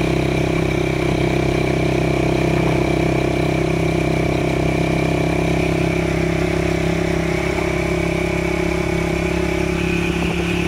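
Engine of a moving road vehicle running steadily at cruising speed, heard from on board, with an even drone of several pitches over road noise.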